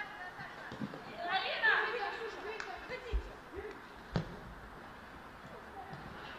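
Footballers' voices calling out on the pitch for a couple of seconds, then a single sharp thud of a football being kicked about four seconds in.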